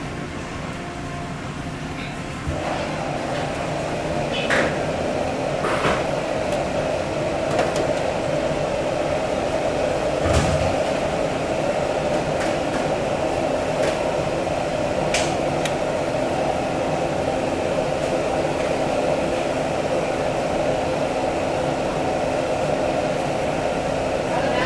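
A steady mechanical hum that comes in about two and a half seconds in, with a few sharp knocks of a large knife against a wooden cutting board as fish fillets are sliced.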